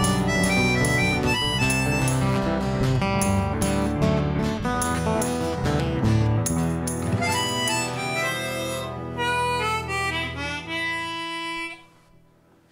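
Instrumental ending of an Irish ballad: chromatic harmonica carrying the melody over strummed acoustic guitar and bass, closing on long held notes. The music stops just before the end.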